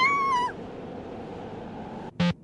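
Cartoon cry of the small white dragon Hakuryu in jeep form: one short, high-pitched squeak that drops in pitch as it ends, about half a second in. Then a steady, low background rumble.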